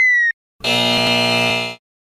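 A falling electronic tone cuts off, then a harsh 'wrong answer' buzzer sound effect sounds for about a second, marking a wrong head-to-body match.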